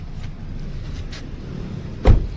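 Low rumbling wind and handling noise on the microphone as the camera is carried, with two faint clicks.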